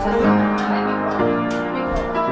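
An upright piano being played: a run of notes and chords struck one after another, each ringing on as the next comes in.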